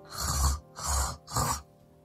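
Three short snores made with the mouth alone, air drawn in against the soft palate at the back of the roof of the mouth. This is a practice step toward the inward lip bass beatbox sound.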